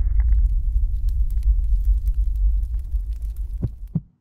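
A deep, steady low rumble with a throbbing pulse and faint scattered crackles, with two sharper clicks near the end before it cuts off suddenly.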